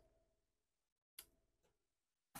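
Near silence: room tone, with one faint brief click about a second in.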